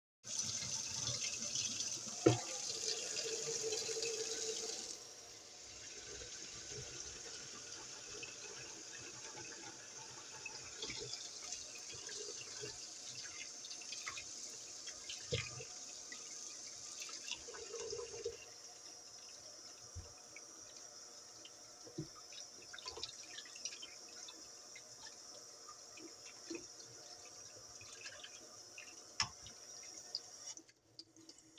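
A thin stream of tap water runs into a stainless steel sink, louder for the first five seconds, then softer as it falls into a plastic tub of raw meat slices being rinsed by hand. A few sharp knocks sound over it, the loudest about two seconds in.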